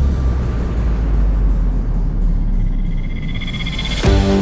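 Background music in a hissing, rumbling build-up passage, with a high tone swelling over its second half.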